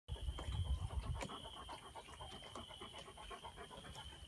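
Komondor puppy blowing bubbles into the water of a plastic tub with its muzzle under the surface. A loud burst of bubbling breath in the first second is followed by lighter, rapid bubbling pops.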